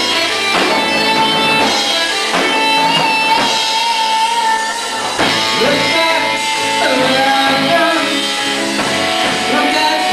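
Live rock-musical number: a band with strummed guitar accompanying a lead singer holding long, wavering notes.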